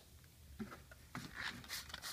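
Faint handling noise: a few soft scrapes and rustles of hands moving over the saddlebag's fabric, starting about half a second in and busiest in the second half.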